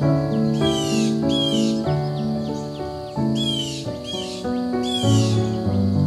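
Slow, calm piano music, with a bird calling over it: five short calls, two about half a second to a second and a half in and three more later on.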